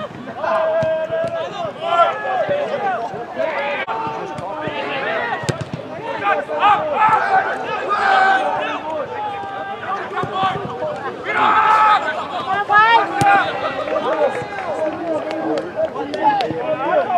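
Indistinct voices at a soccer match: players calling out and spectators talking by the sideline, without clear words. A single sharp knock sounds a little over five seconds in.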